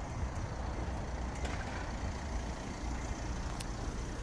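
Steady low outdoor background rumble with a faint hiss, and two faint ticks, about a second and a half in and again near the end.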